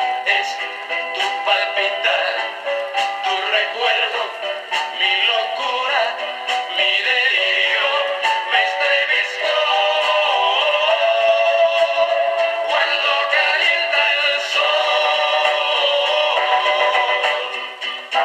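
A 1960s vinyl record of a Latin ballad with male voices singing, played on a Penny Borsetta portable record player and heard through its small built-in speaker. The sound is thin, with no bass.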